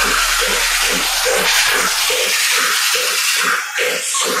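Dubstep music with 8D panning, in a stripped-back passage. The deep bass fades out early, leaving a repeating pulse about three times a second over a hissy high wash.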